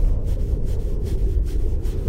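Wind buffeting the microphone on open ice: a steady low rumble.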